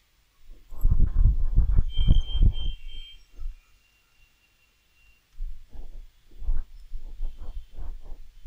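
Low, muffled thumping and rumbling on the microphone, in two spells: one starting about half a second in and one starting about five seconds in, with a near-silent gap between.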